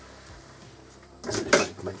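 Quiet room tone for about a second, then a man's voice speaking in Russian.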